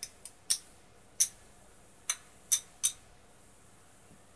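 Casino chips clicking against one another as they are picked up and stacked by hand while being counted: about seven sharp clicks, irregularly spaced, over the first three seconds.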